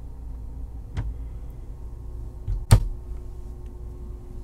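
Two knocks over a steady low hum: a light one about a second in and a louder, sharper one just before three seconds.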